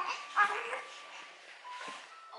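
A brief, soft, pitched vocal sound about half a second in, short and high like a small creature's voice.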